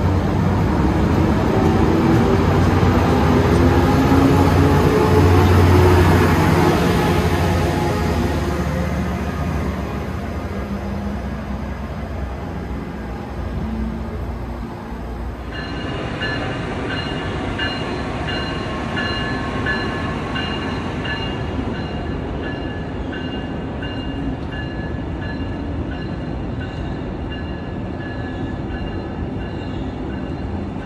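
Tri-Rail push-pull commuter train pulling out of the station: low engine rumble with rising pitch and wheel noise build, peak after a few seconds, then fade as it moves away. Halfway through the sound changes abruptly to a steadier, quieter train passing, with a few thin high ringing tones over its running noise.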